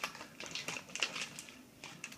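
Blue painter's tape being peeled back off a shower control panel: a run of quick, irregular crackling clicks.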